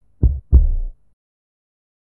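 Heartbeat sound effect: a single deep lub-dub, two thumps about a third of a second apart, the second one longer.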